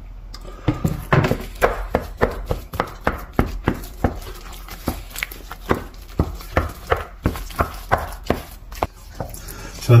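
Wooden spatula beating corned beef into mashed potato in a stainless steel saucepan. It knocks against the pan in a steady rhythm of about two or three strokes a second.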